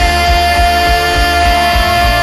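Live worship band playing: an electric bass and a steady kick drum beat under one long held note.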